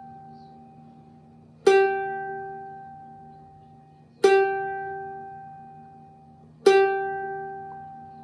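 The G string of a Rozini student-model cavaquinho is plucked three times, about two and a half seconds apart. Each note rings and fades at the same pitch while the string is being tuned against a clip-on tuner.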